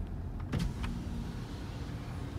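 A Hyundai's electric power window being lowered: a sharp click about half a second in, then the window motor's faint steady hum. The car's low interior rumble runs underneath.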